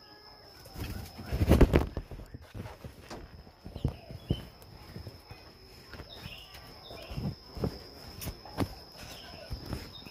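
Irregular knocks and rustling as the camera is handled against a wire-mesh bird cage and its cover, loudest in a burst a second or two in. Several faint short bird chirps come in among them.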